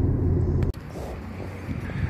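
Low, steady rumble inside a running car's cabin, cut off abruptly less than a second in, leaving a quieter background.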